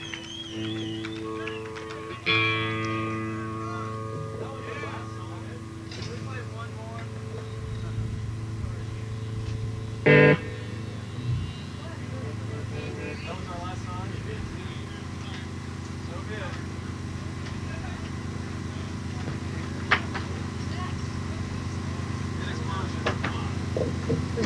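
Electric guitar chords left ringing out through the stage amplifiers at the end of a live rock song, struck again about two seconds in and slowly dying away. A short loud blast of sound comes about ten seconds in, and afterwards a steady low amplifier hum remains.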